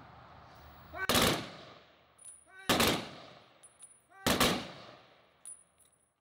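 Honor guard rifle volley salute: three loud volleys about a second and a half apart, each ringing out with an echo after it. This is the traditional three-volley salute.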